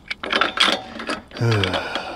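A sigh, with small metallic clicks and clinks from a nut being turned by hand on a bolt through a metal antenna mounting bracket; the nut keeps spinning without getting tight.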